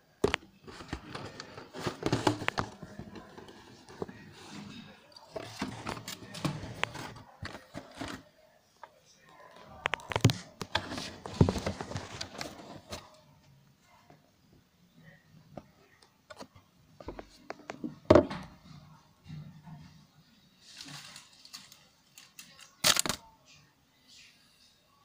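Handling noise: fabric rustling and scraping against the camera's microphone as it is moved against a flannel shirt, in irregular bursts, with a sharp knock past the middle and another near the end.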